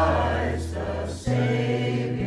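Mixed choir of men and women singing a carol together, accompanied by a strummed acoustic guitar; the sung line and the chord change about a second and a quarter in.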